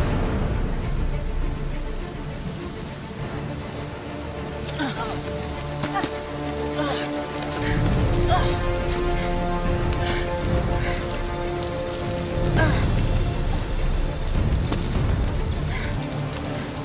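Film fight-scene soundtrack: music with held notes over a steady hiss like rain, with short vocal sounds from the fighters now and then.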